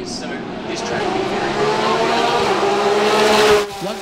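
Thailand Super Series GT race car going past at speed on the track, its engine growing louder to a peak about three and a half seconds in, then dropping off suddenly.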